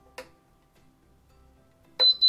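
A single click about a quarter second in as the control dial of a Vevor mug heat press is pressed to switch it on. Faint background music runs underneath.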